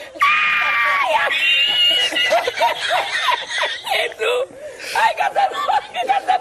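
Two drawn-out high-pitched screams, the second higher than the first, followed by rapid snickering laughter.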